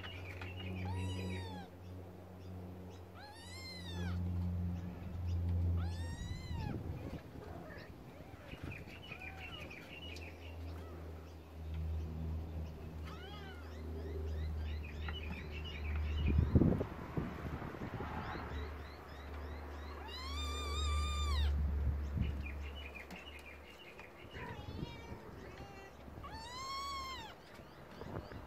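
A trapped kitten mewing: high meows that rise and fall, one every few seconds, with a quick run of them about two-thirds of the way through. A low steady hum runs underneath, and there is a single thump around the middle.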